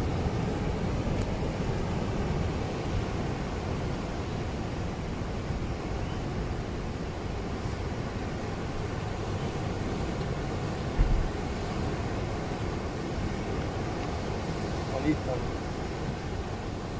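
Steady roar of ocean surf breaking on a rocky shore, with one brief low bump about eleven seconds in.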